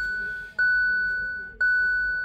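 A 2018 Hyundai i30's dashboard warning chime sounding just after the ignition is switched on. It is a single bell-like tone that repeats about once a second, each chime fading away before the next.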